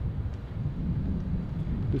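Wind buffeting the microphone: a low, uneven rumble with no clear pitch.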